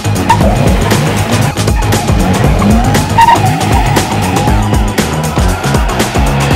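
Tyres squealing as a Porsche Taycan electric sedan accelerates hard on tarmac, a wavering squeal through the first few seconds, mixed with background music with a steady beat.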